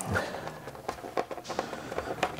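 Quiet handling noise: a few light clicks and rubs from hands holding the glued elastic against the plastic shoulder bell.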